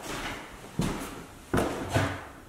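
Footsteps on a bare wooden floor, about three heavy steps, the last two close together near the end.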